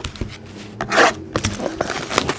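Hands handling and opening a trading-card box: rustling, crinkling and scraping of its plastic wrap and cardboard, with one louder crinkle about halfway through.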